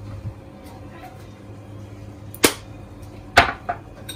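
Two sharp clicks about a second apart, with a smaller one just after the second, from a plastic spice jar's flip-top lid being snapped shut and the jar being handled on a granite worktop. A low steady hum runs underneath.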